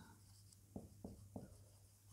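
Marker pen writing on a whiteboard, faint: three short strokes close together around the middle.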